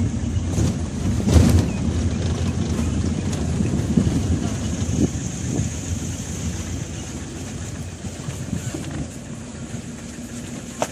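A vehicle driving on a rough dirt track: a steady engine and tyre rumble with a few knocks from bumps. It gets somewhat quieter in the last couple of seconds as the vehicle slows.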